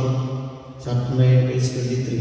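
A priest's voice chanting in two long phrases held on a steady pitch, with a short break about a second in.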